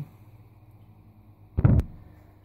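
Faint room tone, broken about one and a half seconds in by a brief, loud, low thump with a sharp click at its end.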